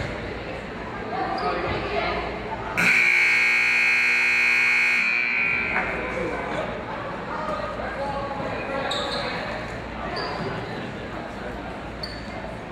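Gymnasium scoreboard buzzer sounding once, a loud, steady blare of about three seconds that starts about three seconds in, over background chatter in the hall. It marks the end of a timeout.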